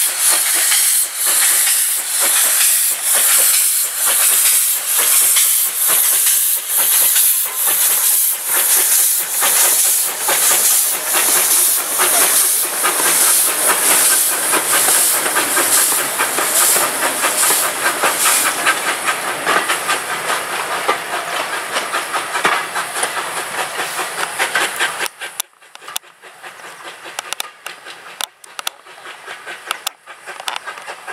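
Small steam tank locomotive working a train past: loud, regular exhaust beats over a steady hiss of steam. From about halfway, the beats give way to a faster rattle of wheels as the coaches go by. Near the end the sound drops suddenly to a quieter, uneven rattle.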